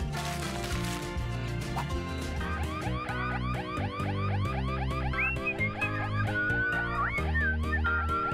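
Alarm siren going off over background music: from about two and a half seconds in, a fast warble of rising-and-falling sweeps, several a second. Near the end a whistled tune runs over it.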